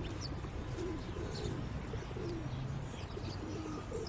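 Outdoor bird ambience: a dove cooing in short, repeated low phrases, with faint high chirps of small birds over a steady background hiss.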